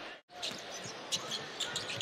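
Basketball being dribbled on a hardwood court during a live game, short sharp bounces over steady arena crowd noise. The sound drops out briefly just after the start.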